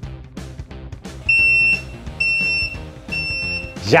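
Sous vide immersion circulator's timer alarm: three electronic beeps, each about half a second long and a little under a second apart, signalling that the one-hour cook has finished.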